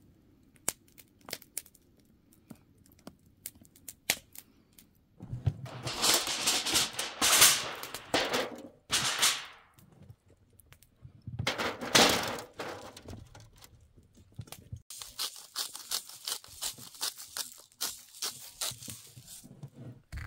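Food-preparation handling noise: scattered clicks and knocks, then two loud bursts of tearing and crinkling, as of packaging or foil being handled, and near the end a long run of rapid, evenly spaced clicking.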